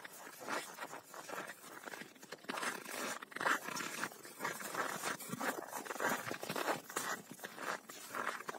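Footsteps crunching on packed snow: a run of irregular, soft crunches and scrapes.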